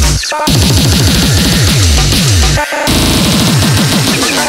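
200 BPM hardcore electronic track: distorted kick drums, each dropping in pitch, play a fast beat under harsh, noisy upper layers. The beat drops out briefly twice, just after the start and about two-thirds of the way through, leaving short tonal stabs.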